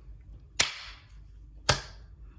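Two sharp hand claps about a second apart.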